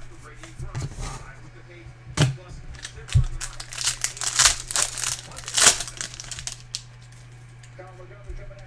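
Foil trading-card pack wrapper being torn open and crinkled by hand, with a run of dense crackling rustles, loudest about four to six seconds in.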